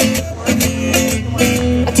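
Acoustic guitar strummed in a steady rhythm, the opening of a song; the singer's voice comes in right at the end.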